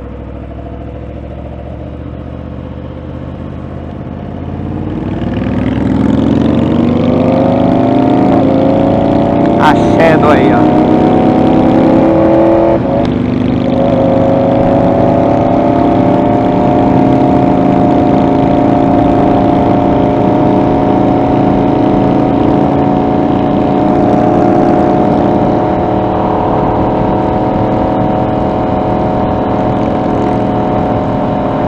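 Yamaha R1 inline-four engine heard from the rider's seat, pulling away at light throttle and then accelerating hard from about four seconds in, its pitch climbing and dropping back at each upshift, about three times, before it settles into a steady cruise at highway speed.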